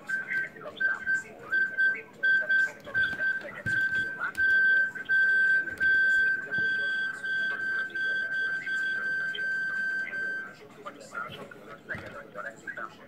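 A steady high-pitched whistle-like tone, on and off in short pieces for the first few seconds, then held unbroken for about six seconds before cutting off near the end, with faint voices underneath.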